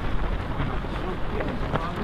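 A crowd of half-marathon runners passing: a steady din of footsteps and scattered voices, with some wind on the microphone.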